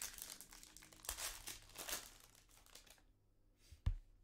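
Foil trading-card pack wrapper crinkling and tearing as it is pulled open. A sharp thump comes just before the end.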